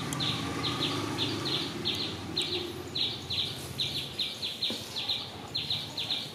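A bird calling outdoors with short, high chirps repeated about three times a second. Under it a low hum fades away in the first second or two.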